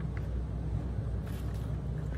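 A steady low hum in the background, with no clear event on top of it.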